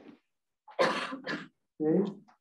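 A person clearing their throat: two short bursts about half a second apart, with a short spoken sound near the end.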